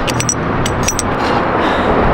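A few quick clicks and rattles in the first second as a wall-mounted key lockbox is handled, its lid tugged by hand, over a steady outdoor rushing noise.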